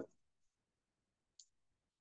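Near silence, with one faint short click about one and a half seconds in.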